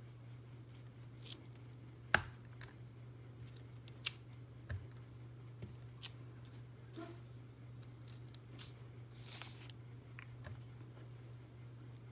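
Clear acrylic stamp block being tapped on an ink pad and pressed onto paper on a cutting mat: scattered light clicks and taps, the sharpest about two seconds in, and a short scrape a little after nine seconds. A steady low hum runs underneath.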